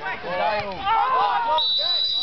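Voices in the first part, then near the end a referee's whistle blown once, one long steady shrill note. It signals a foul against the goalkeeper and a free kick out to him.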